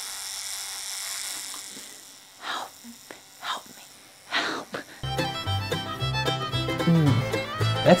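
An electric beard trimmer buzzing steadily, fading out about two seconds in, followed by a few brief soft rushes of noise. Background music with a fiddle-like bowed string sound and a steady low beat starts about five seconds in and is the loudest sound.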